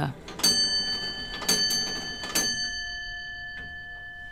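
Longcase clock's bell striking three times, about a second apart, each stroke ringing on and slowly fading.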